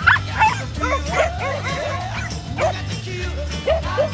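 Several small dogs barking and yipping excitedly in play, a run of short sharp barks spaced about half a second to a second apart, over background music.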